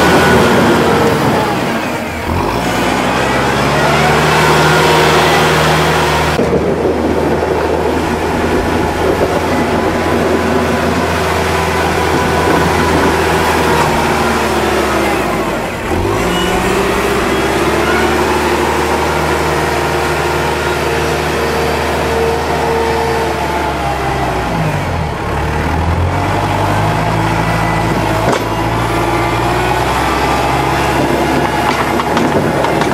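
Kubota tractor's diesel engine running hard while the loader-mounted snow plow pushes wet, heavy snow. The engine note dips and climbs back up three times, about two seconds in, in the middle and a few seconds before the end.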